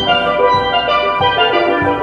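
Steel pan ensemble playing a tune: struck steel pans ringing out melody and chords over lower bass pan notes.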